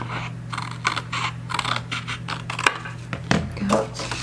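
Scissors snipping through thin cardstock in a quick run of short cuts, trimming a narrow strip off the edge of the sheet.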